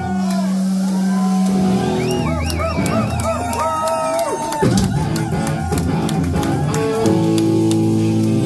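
Rock band playing live: electric guitars, bass guitar and drum kit. A lead line of bent, wavering guitar notes runs through the middle, and dense drum and cymbal hits follow from about four and a half seconds in.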